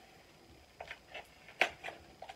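Tape seal on a boxed eyeshadow palette being cut open: a few short clicks and scrapes, the sharpest about one and a half seconds in.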